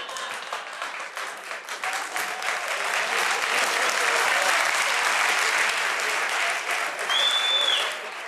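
Studio audience applauding, the clapping swelling over the first few seconds and then holding. A short high whistle comes near the end.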